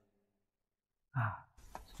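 About a second of near silence, then a man's short audible breath, like a sigh, followed by a few faint mouth clicks.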